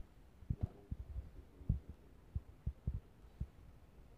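Soft, irregular low knocks and thumps of handling, about ten spread over the four seconds.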